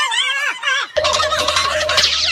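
Shrill, warbling squeals from a person's voice during a scuffle, joined about a second in by a steady low hum under a denser warble.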